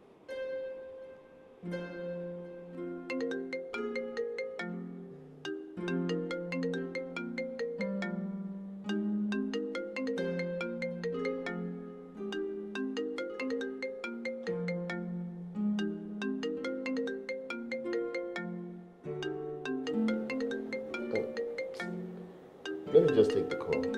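Light background music of quick plucked and mallet-like notes playing a bouncing melody over a bass line, starting abruptly.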